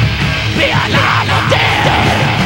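Heavy metal band playing a 1985 demo taped live in a rehearsal room on a Betamax VCR: distorted electric guitars, bass and drums, with yelled vocals.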